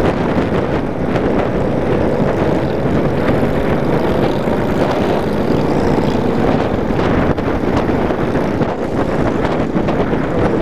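Cruiser motorcycle engine running steadily at highway speed, heard under a heavy rumble of wind on the microphone.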